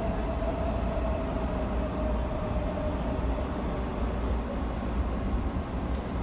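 Steady low rumble with hiss, like a machine or vehicle running, with a faint humming tone that fades out about three seconds in.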